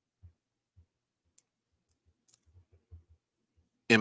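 A near-silent pause holding a handful of faint, scattered low clicks and knocks at uneven intervals, a cluster of them in the second half; a man's voice starts right at the end.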